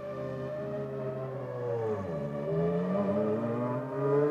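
Formula One car engine running at low, steady revs. About halfway through, its note dips, then rises as the revs pick up.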